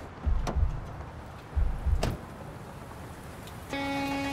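Two dull thuds, each with a sharp click, about a second and a half apart: a pickup truck's door being opened and shut as someone climbs in. A held musical chord comes in near the end.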